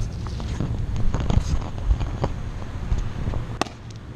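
A shaken aluminium soda can being handled and thrown onto asphalt, giving scattered knocks and clatters with a sharp click near the end, over a steady low rumble.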